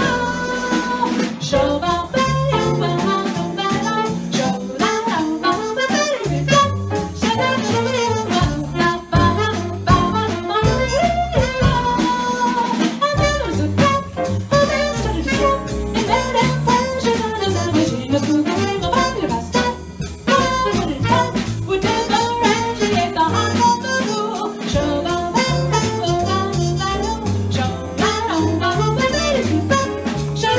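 Live jazz combo of piano, upright bass, drums, trumpet and alto saxophone playing a slow tune, with melodic lines over a moving bass part and no break.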